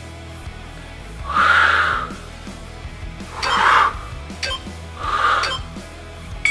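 Background music with a steady low beat, over which a man breathes out hard three times, about two seconds apart, as he rises from each bodyweight squat.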